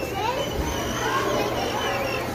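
Children's and adults' voices chattering in the background, over a steady low hum.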